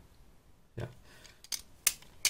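Metal Andux CSGO balisong (butterfly knife) trainer being flipped open in the hand, its handles and blade clacking together in about three sharp clicks. The loudest click comes near the end.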